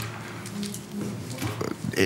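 Quiet, low human voice sounds in a meeting room, a soft chuckle picking up near the end.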